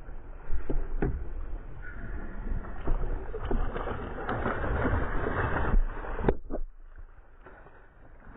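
A hooked fish splashing and thrashing at the water's surface beside a boat. The splashing is loudest for a few seconds mid-way, then drops off suddenly about six seconds in.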